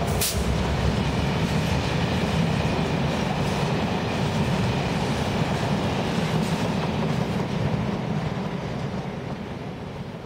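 Freight train passing at speed behind a Class 67 diesel locomotive: a steady loud rumble of tank wagons running over the rails, with a brief sharp high-pitched burst just after the start. The noise fades away over the last two seconds as the end of the train passes.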